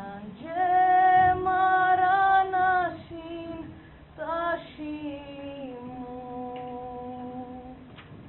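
A woman singing unaccompanied, a slow line of long held notes. One loud sustained note comes about half a second in; later, softer held notes step down in pitch.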